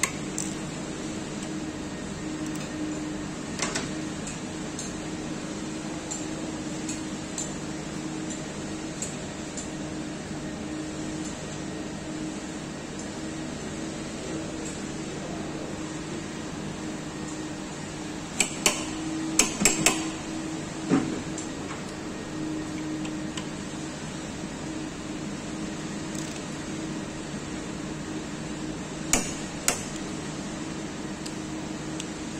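Sharp metallic clicks and clinks of hand tools on the scooter's variator and clutch nuts as they are tightened with a torque wrench and holding tool: a single click about four seconds in, a quick run of four or five clicks around the middle, and two more near the end, over a steady low hum.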